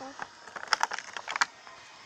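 A few light plastic clicks and taps as tiny toy grocery figures are handled and pressed into the clear plastic slots of a collector's case, clustered in the middle.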